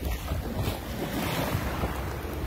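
Shallow surf washing in and out over a sandy beach, with wind rumbling on the microphone.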